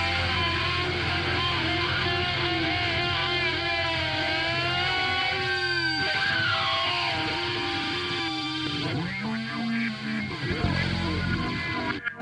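Punk rock recording: distorted electric guitar holding long notes that bend slowly up and down over a steady low hum. The notes thin out over the last few seconds and stop abruptly at the end.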